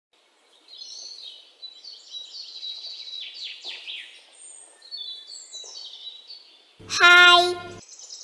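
Small birds chirping and twittering in quick, high, falling calls. About seven seconds in, a much louder held note lasts about a second and cuts off sharply.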